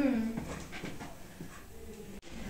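A girl's closed-mouth "mm-mm" hum, ending about half a second in, followed by faint sounds of movement as the girls turn in their chairs.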